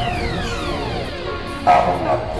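Science-fiction power-down sound effect over background music: several tones glide steadily downward together for about a second and a half, marking the spaceship's computer shutting down. A brief louder burst comes near the end.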